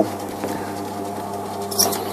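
Metal lathe running with a steady electric motor hum, its chuck turning an aluminium tube. A brief hiss comes near the end.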